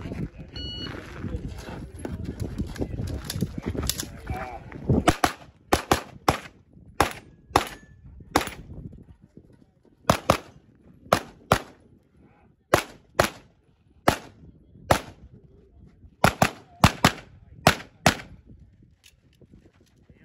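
Wind rumbling on the microphone, with a short electronic shot-timer beep about a second in. From about five seconds in, a pistol fires about two dozen shots, many in quick pairs, in strings separated by short pauses.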